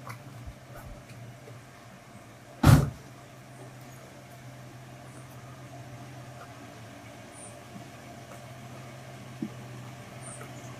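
Steady low hum of an idling car, with one loud, short sound about three seconds in.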